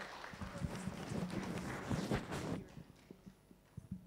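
A small audience applauding, the clapping stopping about two and a half seconds in, followed by a few scattered faint knocks.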